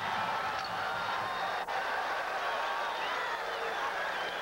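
Stadium crowd noise cutting in suddenly: a steady din of many overlapping voices chattering and calling out, with one sharp click about one and a half seconds in.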